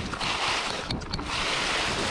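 Mountain bike riding a trail: a rushing hiss of tyres and wind that swells twice, with a few sharp clicks and rattles.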